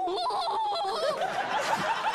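Studio audience and judges laughing loudly, many voices overlapping in hearty laughter.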